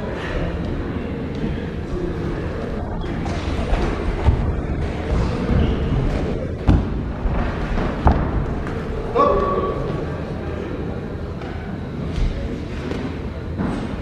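Kicks and gloved punches landing in a savate bout: a handful of sharp thuds between about four and eight seconds in, over the steady voices of a crowded sports hall.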